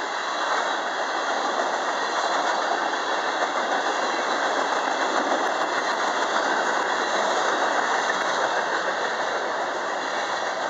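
Freight cars of a manifest train rolling by, covered hoppers and then gondolas: a steady rumble of steel wheels on the rails with no let-up.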